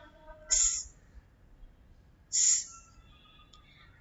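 A woman's voice making the phonics sound of the letter S: two short hissed "sss" sounds, just under two seconds apart.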